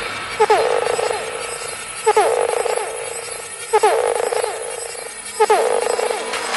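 Psytrance music in a section without a kick drum: a synth figure repeats about every second and a half to two seconds, a quick pair of downward-gliding blips followed by a held mid-pitched tone.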